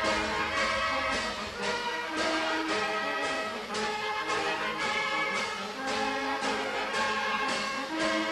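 A filarmónica (brass and wind band) playing a tune with a steady beat, about two beats a second.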